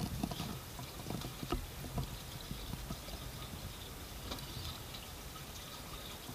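Water slapping and trickling against the hull of a small fishing boat, with a few light knocks in the first two seconds.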